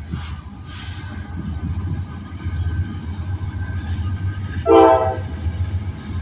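Diesel freight locomotives rumbling as the train approaches, slowly growing louder, with one short blast of the lead GE AC44C6M's Nathan K5LA horn about five seconds in. The horn is sounded inside a crossing quiet zone.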